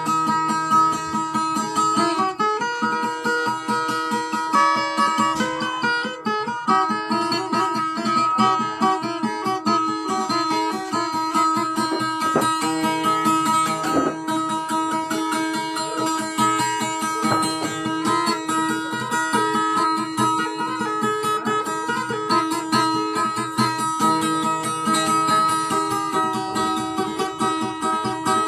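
A plucked string instrument playing a quick, continuous run of notes over a few steady held tones, with no singing.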